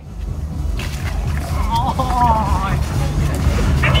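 A steady low rumble, with a voice calling out briefly in the middle.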